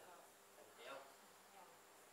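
Near silence: faint room tone, with one brief faint sound about a second in.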